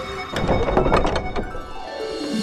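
Dramatic background-score sting: a sudden percussive hit about a third of a second in, a few quick strikes after it, then a falling tone that fades near the end.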